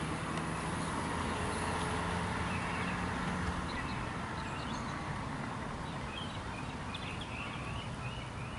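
Steady distant road traffic noise with a low engine hum that fades out a little before halfway, and a few faint bird chirps in the second half.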